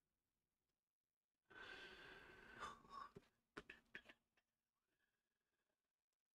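A person sighing: one long breath out lasting under two seconds, followed by a few faint clicks.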